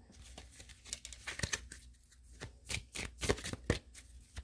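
A deck of tarot cards being shuffled by hand: a run of soft, quick card clicks and snaps, sparse at first and coming thicker in the second half.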